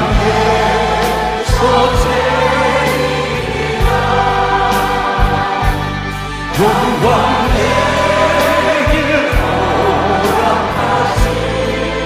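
Worship music: a lead singer and choir sing a Korean praise song over a band, with a drum beat.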